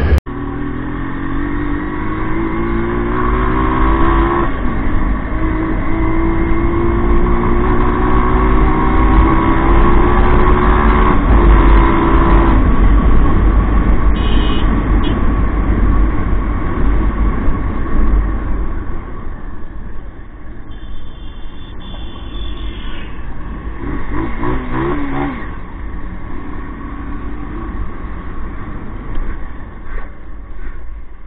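Motorcycle engine running under way, its pitch climbing over the first few seconds and then holding steady, over a low rumble. Past the middle it eases off and gets quieter as the bike slows, with one brief rise in pitch.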